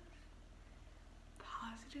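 A pause with only a faint low hum, then a woman's soft, whispery voice resuming about a second and a half in.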